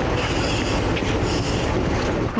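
Loud, steady mechanical rumble with hiss, typical of a fire engine's engine running close by.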